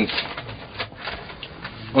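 Sheets of paper being handled and unfolded, a soft irregular rustling.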